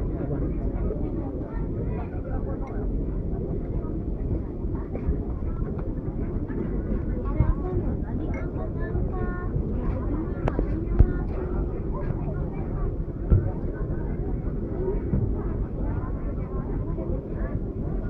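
Indistinct background voices over a steady low rumble, with two brief knocks about eleven and thirteen seconds in.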